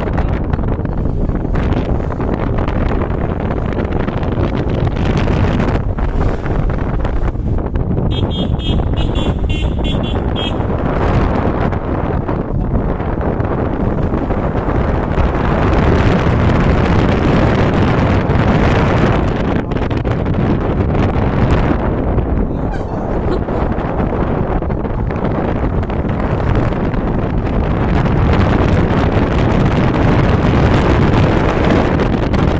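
Steady, loud wind buffeting and road noise heard from a moving vehicle. About eight seconds in, a high, rapidly pulsing horn sounds for about two seconds.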